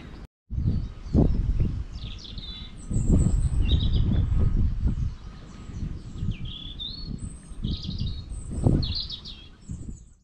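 Small birds chirping at intervals over an uneven low rumble, with a brief dropout to silence right at the start.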